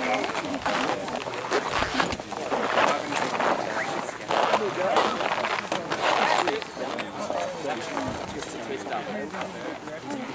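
Indistinct voices of people talking, with several louder swells of noise in the first two thirds.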